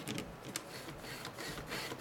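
Light, irregular clicks and rattles of plastic parts as a hand handles an opened DVD drive and its tray mechanism.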